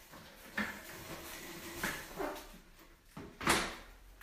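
An adjustable weight bench being hauled across a rubber-matted floor: a few knocks and scrapes, then a louder clatter about three and a half seconds in as it is set down.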